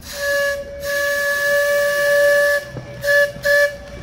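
Steam boat whistle blowing: a short blast, a long blast, then two quick short toots, a steady hissy tone.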